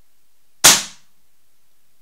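.20 calibre QB air rifle fired once with no silencer: a single sharp report about two-thirds of a second in, dying away within half a second.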